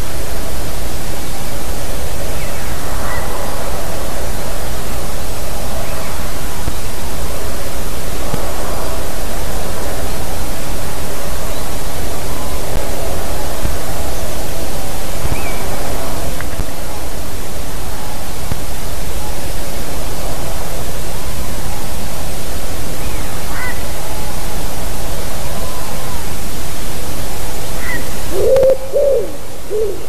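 Steady loud rushing noise with faint, scattered calls of small birds. Near the end the noise drops and a common wood pigeon begins its song of low, repeated coos.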